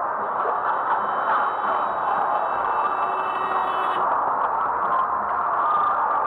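Steady driving noise of a car in slow traffic, heard inside the cabin through a low-quality camera microphone. A thin, high whine of several steady tones lies over it and cuts off about four seconds in.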